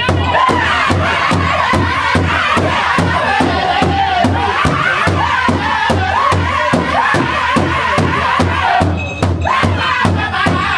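Powwow drum group: several men singing in high, strained voices together over a fast, even beat struck in unison on one large shared powwow drum. The singing dips briefly near the end while the drumming carries on.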